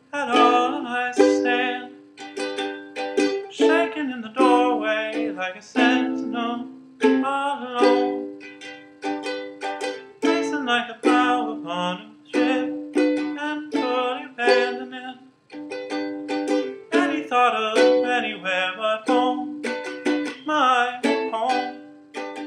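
Ukulele played solo: plucked chords and single notes, each struck sharply and left ringing, in a steady flowing rhythm.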